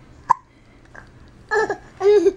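A single short, sharp sound about a third of a second in, then a brief baby's babble about one and a half seconds in.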